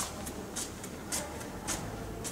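Quick, light footsteps swishing on artificial turf, about two a second, over a low steady hum in the hall.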